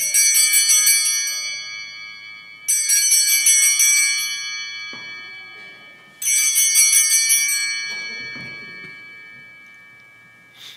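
Altar bells (Sanctus bells) shaken three times for the elevation of the chalice at the consecration: each ring is a short jingle that rings on and fades over a few seconds, the last one fading out near the end.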